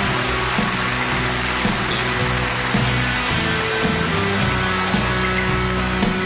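Live band accompaniment of a Shōwa-era kayō ballad playing an instrumental passage between sung lines: sustained bass and chord notes changing every second or so, under a steady hiss.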